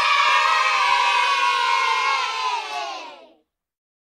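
A group of children cheering in one long, held shout that slides slightly down in pitch and fades out near the end.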